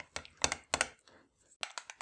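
Small metal spoon clicking and scraping against a white ceramic bowl while stirring a thick sour-cream and dill sauce: three sharp clicks in the first second, a short pause, then a quick run of clicks near the end.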